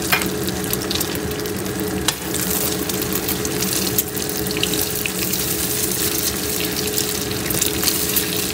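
Egg frying in hot oil in a wok: a steady sizzle with scattered crackles and pops, over a steady low hum. From about four seconds in, a spatula stirs and scrapes the egg around the pan.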